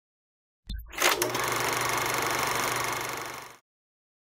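Production-logo sound effect: a low thud, then a loud hit opening into a steady, dense rattling buzz that lasts about two and a half seconds, fades and stops.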